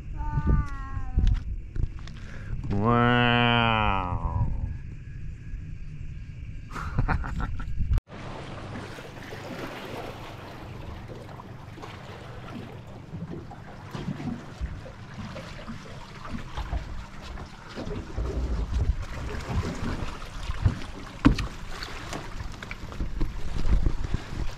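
A couple of brief vocal calls, one high and one lower and drawn out. Then, after a cut, a boat's outboard motor running, with water wash and rushing noise.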